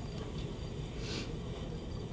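Quiet background ambience from a film soundtrack, with a short soft hiss about a second in.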